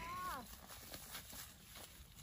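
A child's short, faint call falling in pitch, then light footsteps on a dry dirt path.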